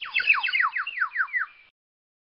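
A bird calling: a rapid series of about nine notes, each sliding down in pitch, lasting about a second and a half before stopping.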